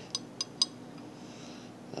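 Three light clicks of a glass sauce bottle tapping against a metal spoon as thick sauce is shaken out onto it.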